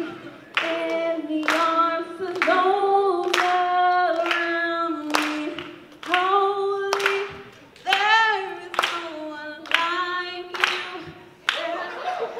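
A voice singing a slow worship song while the audience claps along to a steady beat, about three claps every two seconds.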